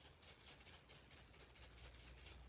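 Near silence, with faint, quickly repeating scratchy strokes of a paintbrush being worked back and forth over paper.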